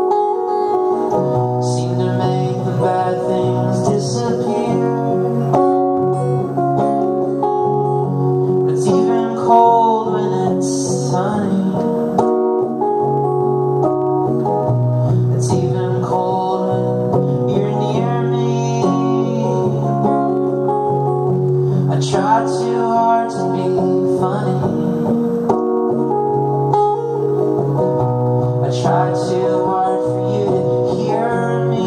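Acoustic guitar strummed steadily under a man's singing voice in a live solo performance of a folk-rock song.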